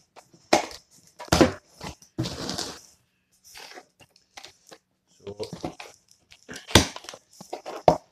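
Cardboard parcel being torn open by hand: packing tape and cardboard flaps ripping and crinkling in several rough bursts, with a sharp knock or snap about three-quarters of the way through.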